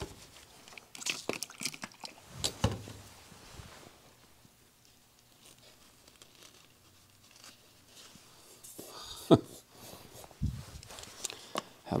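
A sheet of glossy palette paper crinkling as it is handled and pressed down over a wooden cradled panel, in a few short bursts, with a quiet stretch in the middle.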